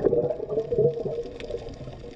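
Exhaled breath bubbling and gurgling underwater, heard muffled through an underwater camera, fading away near the end.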